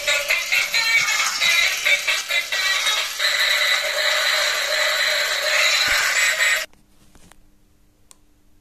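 Electronic jingle with a synthetic singing voice playing from a light-up toy car's small built-in speaker, thin with no bass. It cuts off suddenly a little under seven seconds in, leaving only a faint hum.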